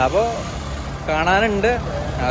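A man talking over street noise, with a steady low hum of a vehicle engine running underneath.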